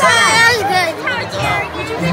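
High-pitched, excited children's voices over the chatter of a theater crowd.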